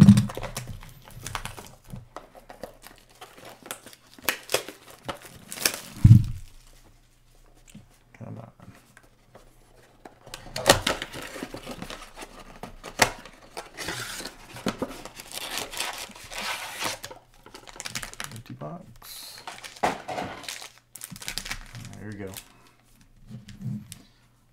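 A cardboard box of 2022 Mosaic trading card packs being torn open and emptied by hand: packaging crinkling and tearing in irregular bursts, with a loud thump about six seconds in.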